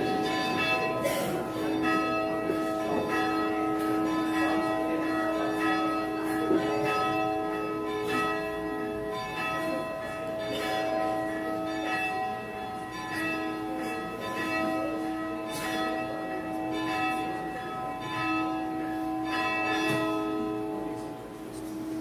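Church bells ringing, struck again and again so that their long, overlapping tones hang together in a continuous peal.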